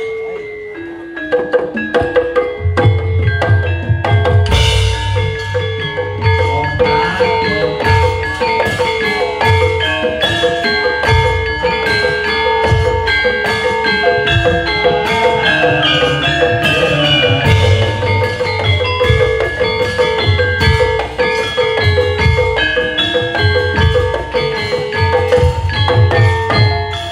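Javanese gamelan playing: bronze metallophones ringing a melody over hand-drum strokes. It starts with a few sparse notes, and the full ensemble comes in about two seconds in.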